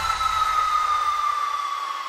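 Electronic dance music breakdown: a sustained synth tone gliding slowly down in pitch over a wash of noise, the bass dying away about a second and a half in.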